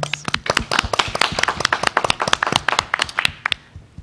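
A small group of about ten people clapping their hands in applause, which dies away about three and a half seconds in.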